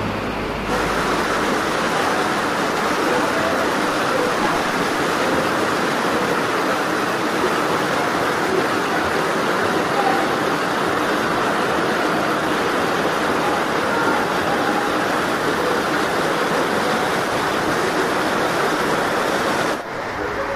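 Shallow river water rushing over stones, a steady, even rushing noise that cuts in suddenly just under a second in and breaks off just before the end.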